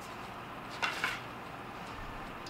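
Faint handling noise: two light clicks close together about a second in, as a bare katana blade with its handle removed is picked up and brought toward the camera.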